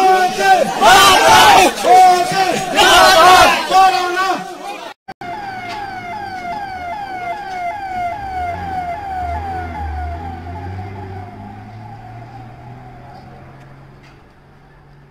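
A crowd of people chanting and shouting loudly, cutting off abruptly about five seconds in. A siren follows, quick falling sweeps repeating about twice a second over a low rumble, fading gradually.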